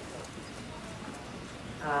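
Quiet hall room tone with a few faint short taps, then a woman's voice starts near the end.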